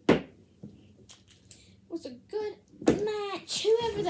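A sharp knock as a plastic wrestling action figure is slammed down onto a toy wrestling ring, followed by a few faint taps. A voice calls out over the last second or so.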